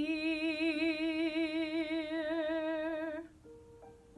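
A woman's singing voice holding the final sung note of a musical-theatre ballad, steady with even vibrato for about three seconds, then stopping. A soft accompaniment note is left sounding near the end.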